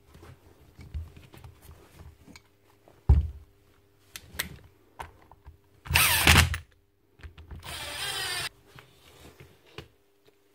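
Makita DTW1002 cordless brushless impact wrench run briefly, without load, after its repair. It gives a loud half-second burst about six seconds in, then a steadier run of just over a second. Clicks and a knock from the tool being handled come before and between the runs.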